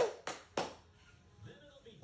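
A high-pitched celebratory squeal cuts off right at the start, followed by two sharp hits about a third of a second apart. Then it goes nearly quiet.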